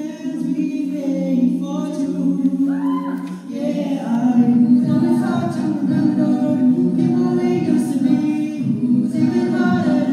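A five-voice a cappella group singing into microphones: held chords of several voices with no instruments, growing louder and fuller about four seconds in.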